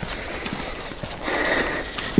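Footsteps and rustling handling noise as a person walks with a hand-held camera, with a few light knocks and a faint brief high-pitched tone a little past the middle.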